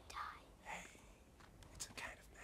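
A man whispering: two short, breathy whispered phrases, with a sharp click near the end.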